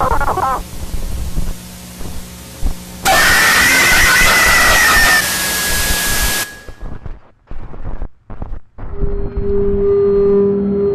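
Horror jumpscare sound effects: a low hum, then about three seconds in a sudden loud burst of harsh static with a high held tone. It cuts off after about three seconds into choppy, broken-up fragments, and a steady low drone starts near the end.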